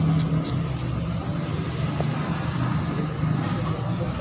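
Steady low hum of a motor vehicle engine running nearby, with two brief scratchy strokes a fraction of a second apart near the start, fitting a wire brush scrubbing a spark plug.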